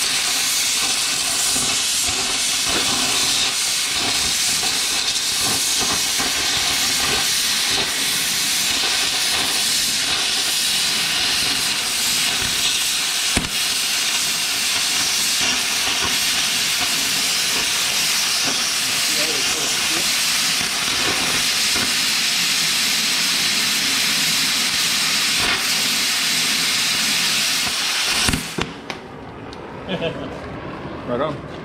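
Oxy-fuel cutting torch running steadily with a loud hiss as it cuts through the steel tooth pockets on an auger flight. The hiss cuts off suddenly near the end.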